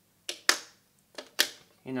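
Plastic whiteboard marker clicking against the board's aluminium tray as it is picked up: two pairs of short, sharp clicks.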